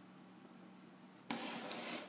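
A faint steady hum, then about a second and a quarter in a brief rubbing, scraping handling noise lasting under a second.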